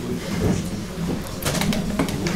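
A low, indistinct voice murmuring, with a few sharp clicks about one and a half seconds in.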